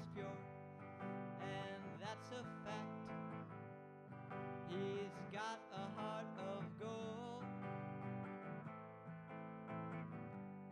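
A hollow-body electric guitar strummed in chords, with a man singing a melody over it.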